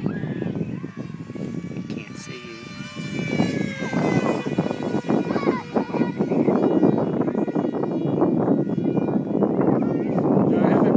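A foam RC jet's Super Mega Jet electric motor and 7x5 propeller whining as the plane makes a pass, its pitch sliding slowly down as it goes by. In the second half, louder wind buffets the microphone.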